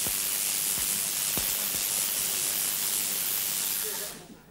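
Spark-gap transmitter driving a 250,000-volt high-frequency step-up transformer (Tesla coil): the sparks discharging from its top electrode into a hand-held fluorescent tube make a steady hiss, which cuts off at the very end when the set is switched off.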